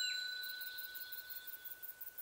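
The tail of a bright chime sound effect, a clear ringing tone that fades away over about a second and a half.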